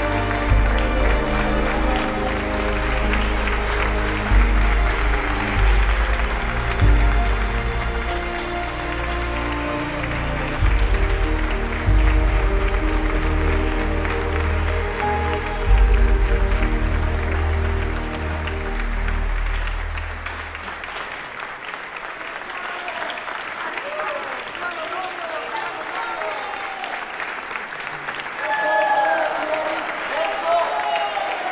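Background music with a heavy bass line, which fades out about two-thirds of the way through, leaving applause. Voices rise over the clapping near the end.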